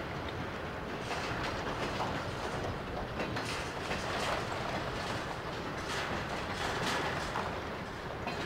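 Diesel-hauled freight train moving through a rail yard: a steady rumble with several sharp clanks from the wheels passing over rail joints in the middle of the stretch.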